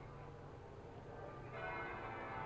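Faint church bells ringing, the ringing growing a little fuller and louder about one and a half seconds in.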